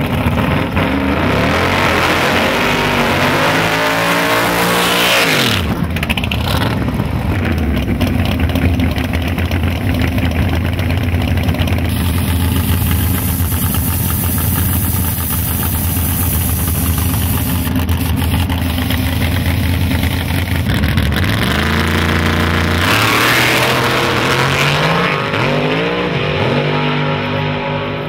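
Drag cars' V8 engines at full volume: revving up and dropping back a few seconds in, running steadily through the middle, then climbing in pitch again near the end as the cars launch down the strip at full throttle.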